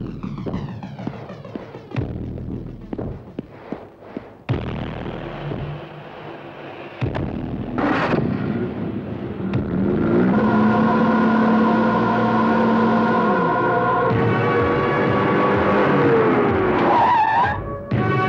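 Film soundtrack: dramatic background music over a vehicle's engine noise, with scattered knocks early on and a falling squeal near the end as a jeep pulls up and stops.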